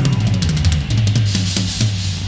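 Live band music led by a drum kit playing a rapid run of snare and cymbal hits over moving bass notes.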